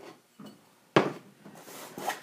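A single sharp knock about a second in as a small aluminum mounting bracket is set down on a wooden benchtop, followed by a soft rustle of cardboard packaging.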